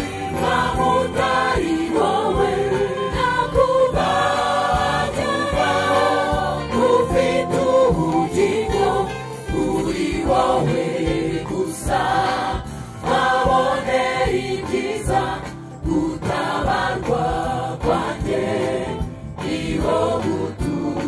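A mixed choir of women and men singing a Rwandan gospel song together into microphones, amplified through loudspeakers, with instrumental backing underneath.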